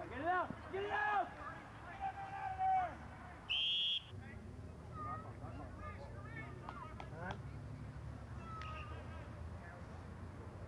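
Rugby players shouting on the pitch, then a single short, steady blast of the referee's whistle about three and a half seconds in, after which fainter calls carry on.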